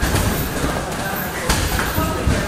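Clinch wrestling against a chain-link cage: bodies knocking into the fence, with a sharp thud about a second and a half in, over background voices in the gym.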